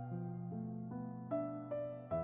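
Calm instrumental waiting music: a slow keyboard melody of single struck notes, about two or three a second, over held low notes.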